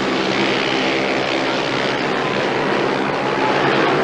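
Speedway motorcycles' 500 cc single-cylinder engines racing flat out round the track, a steady engine note with no break.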